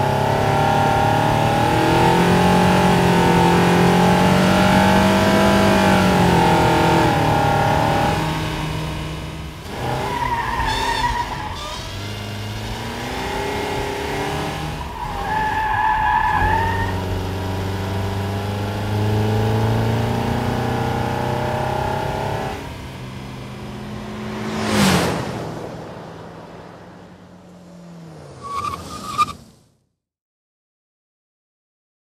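2021 Nissan Rogue Sport's 2.0-litre four-cylinder engine under hard driving, revs climbing and falling as it is pushed, with tyres squealing twice, about ten and fifteen seconds in. Later the engine settles, a sudden loud noise comes about 25 seconds in, and a brief high squeal just before the sound cuts off.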